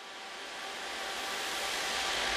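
Electronic white-noise riser: a hissing swell that grows steadily louder, the build-up into an electronic dance track.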